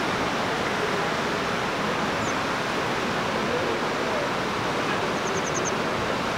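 Steady rushing outdoor noise at an even level, with a quick run of five faint high chirps about five seconds in.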